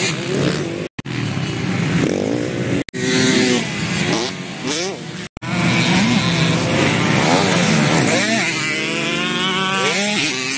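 Motocross bike engines revving up and down on a dirt track, their pitch rising and falling several times. From about eight and a half seconds in, a bike close by holds a high, steady note. The sound cuts out briefly three times.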